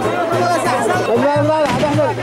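Yemeni mizmar, a double reed pipe, playing a wavering wedding procession tune with drums, over the chatter of a large crowd.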